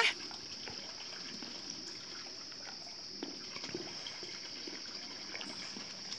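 Faint lapping and small splashes of pool water as an armadillo paddles along, under a steady high-pitched hiss.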